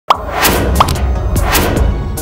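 Electronic logo-intro music. A short rising pop comes right at the start and another just under a second in, over a deep sustained bass and repeated swishes.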